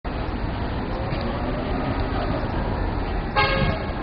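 Steady background hubbub of a busy public building, broken near the end by a short, loud horn-like toot lasting about half a second.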